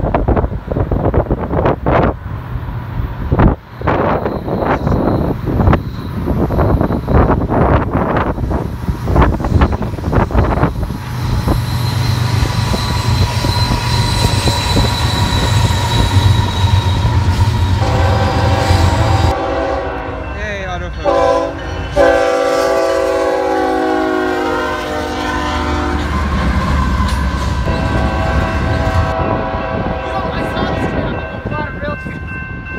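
BNSF diesel freight locomotives running as they approach and pass at the head of an intermodal train. A little past halfway the lead unit sounds its multi-note air horn for several seconds, the chord briefly sliding down in pitch partway through.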